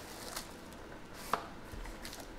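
Faint handling of a cardboard trading-card box and foil pack on a tabletop, with one sharp tap a little over a second in.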